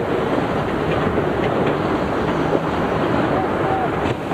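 Steady rush of strong wind and sea water aboard a sailing yacht in a squall, with wind buffeting the microphone. Faint crew voices sit under the noise.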